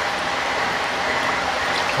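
Steady rush of water in a shallow koi tub, with light splashing as a koi is handled in the water.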